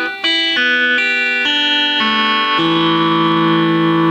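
Electric guitar in Nashville high-strung tuning, its lower strings replaced by thin plain strings tuned an octave up, strummed through a quick run of about six chords, the last one left ringing.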